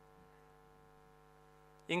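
Steady electrical hum in a pause between sentences, with a man's voice starting near the end.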